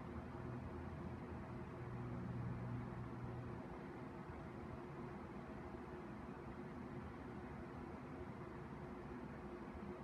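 Faint steady background hum and hiss with a few low steady tones; a deeper hum drops away a little over a third of the way through.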